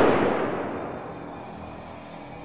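Fading tail of a deep, explosion-like cinematic boom sound effect, dying away over about a second and a half to a faint low hum.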